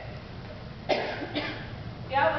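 A person coughing: two short coughs about a second in, half a second apart.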